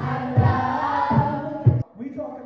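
Young voices singing together, choir-like, over a backing track with a heavy low beat. It cuts off suddenly just before the end.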